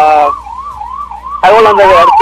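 Electronic siren of a police vehicle sounding in a fast yelp, its pitch rising and falling about three times a second, with people's voices over it near the start and in the second half.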